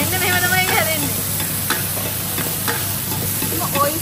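Oyster omelette sizzling in oil on a large flat griddle, with a metal ladle and spatula scraping and clicking against the pan now and then.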